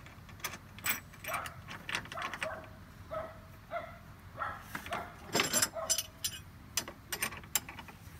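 Metal clinking and rattling of chain links, a shackle and bolt hardware being handled and fitted at a harness mounting point, a run of sharp clinks, busiest a little past the middle. A few short pitched squeaky notes come through as well.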